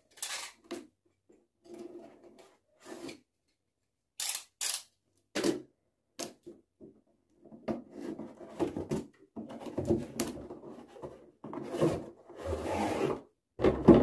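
Cardboard router box being opened by hand: paperboard sliding and scraping against paperboard in short rubs, with two sharp taps about four seconds in and more continuous scraping in the second half.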